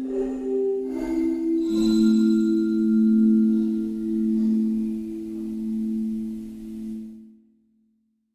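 Rast Sound Deep Element's "Windy Keys" patch, a software keys instrument, playing a few soft, bell-like notes. About two seconds in they settle into a low held chord, which dies away near the end.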